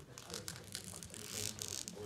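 Faint, low voices in the room, with a rustling, crinkling noise swelling from about halfway through and fading near the end.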